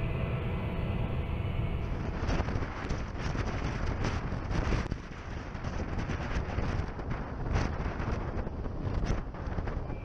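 Wind buffeting an outdoor microphone over a steady low rumble, rising and falling in gusts.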